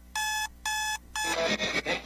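A run of short electronic beeps, each a single steady tone with bright overtones, about two a second. Three of them fall here, and the last is cut short a little over a second in as music and a voice begin.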